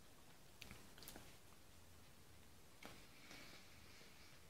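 Near silence: faint mouth sounds of someone chewing a soft cream-filled snack cake, with a few soft clicks about half a second, a second and three seconds in.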